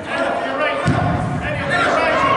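Voices and shouts of spectators in a large, echoing indoor sports hall, with a single dull thump of a soccer ball being struck just under a second in.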